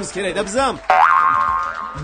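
A comedy sound effect about a second in: a sudden tone that glides sharply up in pitch, then holds and fades over most of a second.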